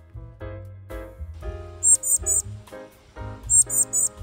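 Background music of held, plucked notes over a low bass. A young bird's high chirps cut in twice, a quick run of three or four notes about halfway through and again near the end.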